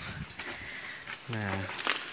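Faint rustling and crinkling of a thin clear plastic sheet, about 0.08 mm thick, being fingered by hand, with a sharp tick near the end.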